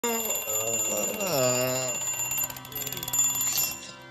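A mechanical twin-bell alarm clock ringing, its hammer rattling fast between the bells, until it is cut off just before the end. Under it, in the first two seconds, a man's low voice groans and slides down in pitch.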